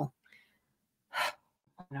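A single short, sharp intake of breath, a gasp, about a second in, between stretches of quiet.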